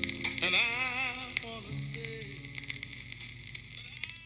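The closing fade-out of a 1960s deep soul record: a held note with vibrato over sustained chords, dying away, with the crackle and ticks of a vinyl 45's surface noise throughout.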